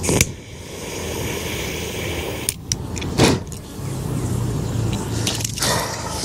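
Wind rumbling on the microphone, with a few short knocks and clicks from handling.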